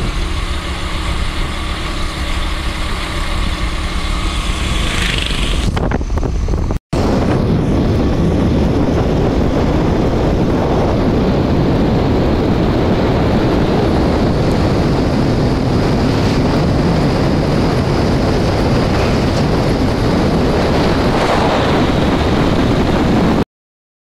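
A vehicle driving along a road, heard from inside through an open window: for the first six seconds an engine hum with steady tones, then, after a brief dropout about seven seconds in, a steady loud rush of road and wind noise. The sound cuts off just before the end.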